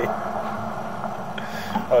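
Steady low machine hum from equipment running on the job, with a short laugh starting right at the end.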